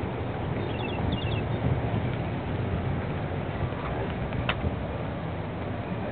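Steady outdoor background noise on a handheld camera's microphone, with a few faint high chirps about a second in and a single sharp click near the end.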